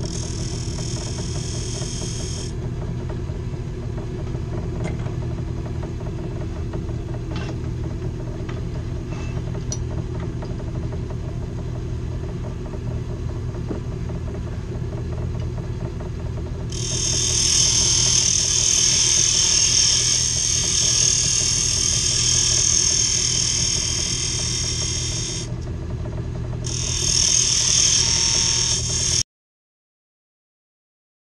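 Rikon mini wood lathe running with a steady motor hum while a turning tool cuts the spinning pine blank, the cuts heard as hissing: briefly at the start, then a longer, louder stretch from about halfway with a short pause near the end. The sound cuts off suddenly just before the end.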